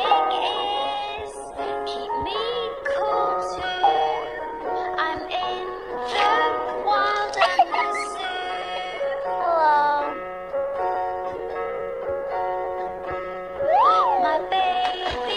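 A children's song: a synthetic-sounding voice singing lyrics over steady backing music.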